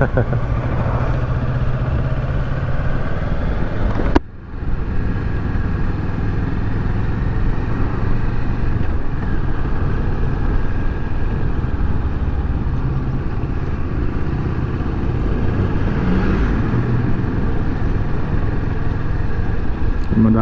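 Kawasaki Versys 650 parallel-twin motorcycle engine running steadily while riding in traffic, with wind rumbling on the microphone. About four seconds in there is a click and a brief drop in the sound.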